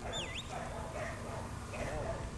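A short high whistled note that slides down and back up, about a quarter second in, over low wind rumble on the microphone.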